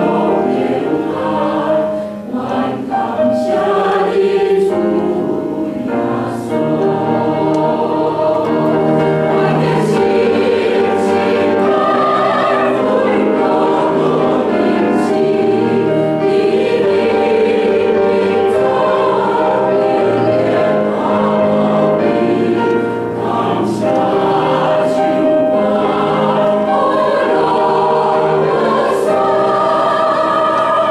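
Church choir singing a hymn in Taiwanese, in sustained chords with short breaks between phrases.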